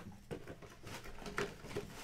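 Handling noise: a few soft, irregular clicks and knocks with faint rustling as the cardboard mini-helmet box is moved close to the microphone.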